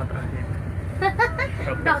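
Steady low rumble of an Indian Railways AC three-tier sleeper coach in motion, heard from inside the coach.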